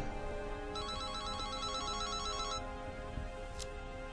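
Flip phone ringing: one electronic warbling ring of about two seconds, starting just under a second in, over soft background music. A short click comes near the end.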